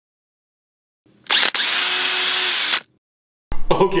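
A power drill's motor whining at full speed for about a second and a half, with a brief stutter just after it starts, then cutting off.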